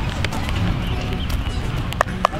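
Footsteps of a person running and stepping quickly across artificial turf through an agility drill, a few light taps over a steady low rumble.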